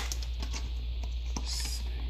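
Pokémon trading cards being slid out of a torn-open foil booster pack: a few light clicks of card stock, with a brief papery rustle near the end.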